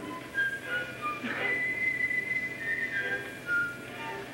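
Quiet passage of orchestral opera music from an old, poor-quality live recording: a few high, thin held notes that step from pitch to pitch over background hiss.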